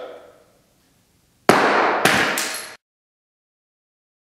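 A frozen drinking glass, dropped from about ten feet, hits a board covered in broken glass with a sharp crash about a second and a half in, then strikes again twice as it bounces, with glassy clatter. The sound then cuts off suddenly.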